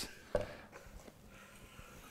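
Kitchen knife slicing raw venison on a wooden cutting board, faint, with one light tap of the blade on the board about a third of a second in.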